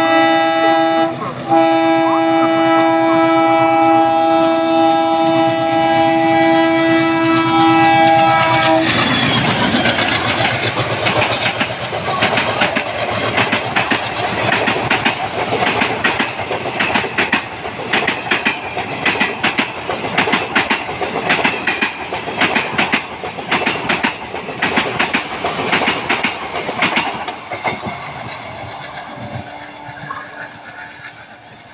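A passing train's horn sounds one long chord, broken briefly about a second in, and stops about nine seconds in. The passenger coaches then rush past with a fast clickety-clack of wheels over rail joints, which fades near the end as the train draws away.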